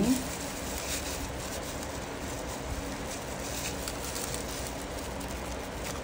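Faint rustling and handling noises of plastic gloves and a plastic-bag-wrapped mould as soft rice-flour dough is packed into the mould, over a steady background hiss.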